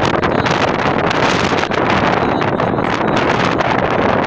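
Loud, steady wind buffeting the microphone.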